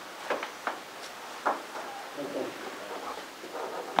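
Quiet meeting-room lull: a few short clicks and rustles, as of papers or objects handled on a table, and faint murmured voices in the background.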